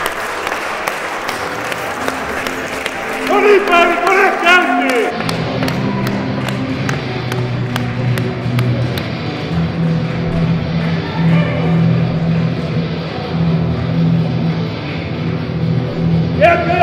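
Crowd clapping and shouting encouragement over background music; loud shouts come around three to five seconds in, then the music carries on with regular claps or beats.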